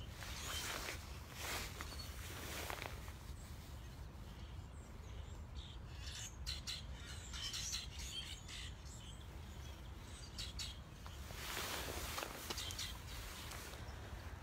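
Wild songbirds chirping and calling outdoors, short high chirps coming in scattered clusters, over a faint steady low rumble.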